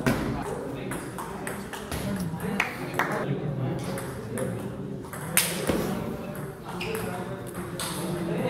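Table tennis rally: the ball knocking off the rubber paddles and bouncing on the table in a string of sharp clicks, the loudest about five and a half seconds in.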